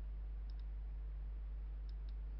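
Computer mouse clicking: two faint click pairs about a second and a half apart, over a steady low electrical hum.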